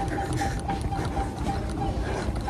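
Running footfalls thudding steadily on a treadmill belt, about three strides a second, over a steady hum with a high note that pulses in time with the steps.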